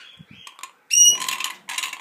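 Dusky lorikeet calling: a faint high whistle near the start, then about a second in a sudden loud, shrill screech that breaks into harsh, rasping noise, with a second rasping burst near the end.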